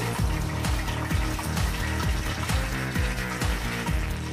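Background music with a steady beat, over the sizzle of chicken pieces frying in hot oil in a wok.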